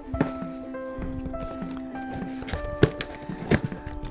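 Soft background music with long held notes, over a few sharp clicks and scrapes of scissors cutting the tape on a cardboard parcel box. The loudest click comes about three-quarters of the way in.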